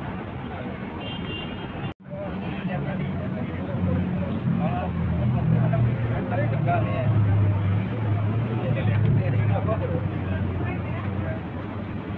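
Busy city traffic noise with people talking nearby. A low engine hum from heavy traffic is strongest through the middle. The sound cuts out for an instant about two seconds in.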